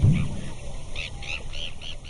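High chirping animal calls: short arched notes that grow louder about halfway through and repeat about three times a second, over a low rumble that fades out at the very start.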